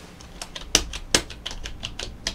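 Typing on a computer keyboard: a quick, irregular run of key clicks, two of them louder, about three quarters of a second and just over a second in.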